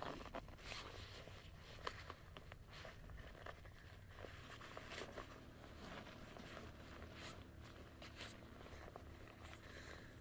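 Faint rustling and scraping of a waterproof jacket's fabric and zip as it is wriggled out of, in irregular short bursts.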